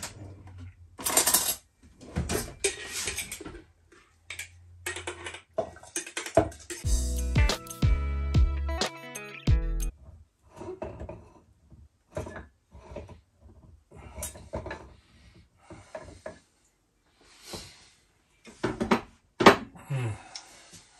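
A kitchen utensil clinks, knocks and scrapes against glass jars and a bowl as packed sauerkraut is moved from a large jar into a quart jar. About seven seconds in, a few seconds of music play.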